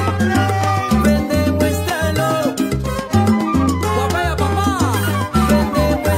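A salsa dura track playing in a DJ mix, with a steady bass line, dense percussion and melodic lines above.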